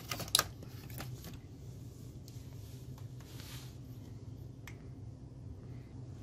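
Sharp clicks and taps from a Toshiba Portege R930 laptop being handled and its lid opened, the loudest just after the start, with a few fainter single clicks later, over a faint steady low hum.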